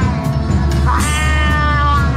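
A drawn-out, meow-like cry sliding slowly down in pitch, starting about a second in, over loud live band music with a steady low drone; the tail of a similar cry ends right at the start.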